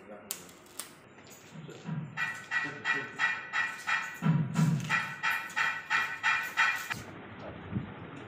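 Two sharp clicks early on, then a fast rhythmic ringing at about four strokes a second that lasts about five seconds and stops suddenly near the end, with a low voice under it.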